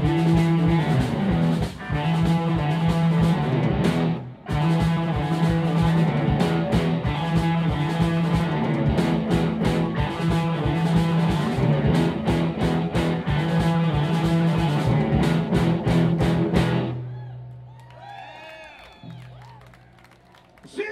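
Live rock band with electric guitars, bass and drums playing a loud instrumental passage, with a brief break about four seconds in. The band stops together near the end, leaving a low note and guitar ringing out as it fades.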